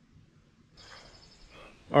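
Near silence at first, then about three-quarters of a second in a faint outdoor ambience sets in: a steady high-pitched chirring from wildlife in the trees over a low background hush. A man's voice starts right at the end.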